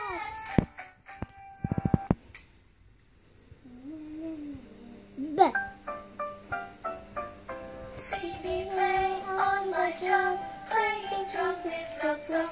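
Children's alphabet song music played from a tablet's speaker: a few sharp clicks at the start, a quiet gap, then a short sweep about five seconds in and a run of short notes that lead into a new tune with a sung melody from about eight seconds in.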